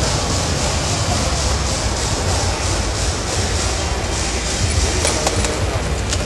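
Steady background noise of a large hall with a low rumble and a faint murmur of voices. A few faint clicks come near the end.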